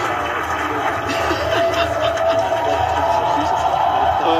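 Several voices talking over one another, partly buried under a steady background noise and a low hum, with a held tone about midway.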